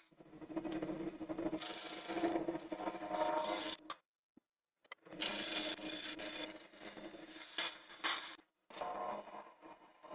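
Wood lathe running while a hand-held turning tool cuts a spinning pink ivory blank: a steady hum under the hiss and scrape of the cut. The sound stops for about a second near the middle, then the cutting starts again.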